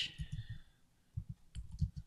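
Typing on a computer keyboard: a string of quiet key taps in two runs, with a pause of about half a second around the middle.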